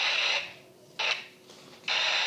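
Mouth-made hissing 'shh' noises imitating a motor, in three bursts: one fading out early, a short one about halfway through, and another starting near the end.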